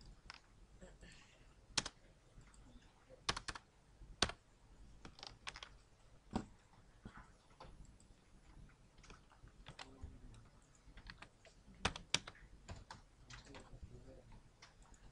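Typing on a computer keyboard: irregular keystrokes, a few of them much louder clicks.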